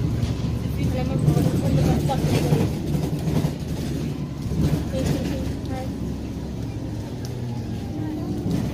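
Alexander Dennis Enviro 400 double-decker bus on the move, heard from inside the passenger saloon: a steady engine and road hum, with passengers' voices talking in the background.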